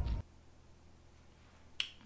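A deep rumble cuts off abruptly just after the start, followed by near silence and then a single sharp click near the end.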